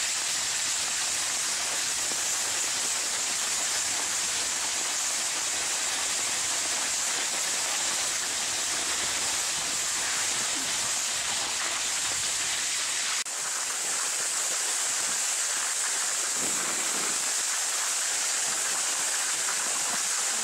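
Steady, loud hiss of sled runners sliding over snow while two dogs pull.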